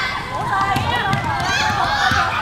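High-pitched shouting voices echoing in a sports hall, over the running footsteps of basketball players on the hardwood court.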